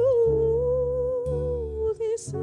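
A woman singing one long held note into the microphone over grand piano chords that change twice beneath it; the note breaks off just before the end.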